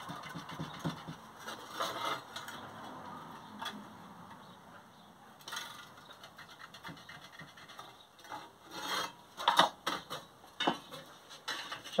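Pencil scratching and rubbing as lines are marked along a ruler on sheet metal clamped in a vise. A few louder clicks and knocks come about three-quarters of the way through.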